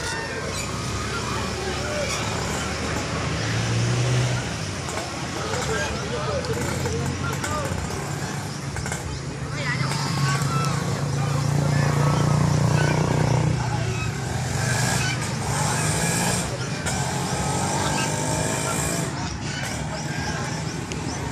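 An engine running steadily, growing louder for a few seconds around the middle, with people's voices in the background.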